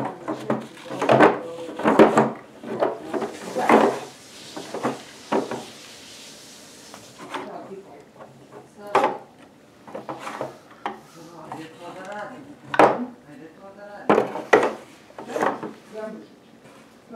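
Small wooden dollhouse pieces, including a little wooden ladder, knocking and clattering against the wooden dollhouse as they are handled, in a string of light, irregular knocks.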